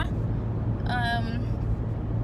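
Steady road and engine noise inside a moving car's cabin: a low, even hum and rumble.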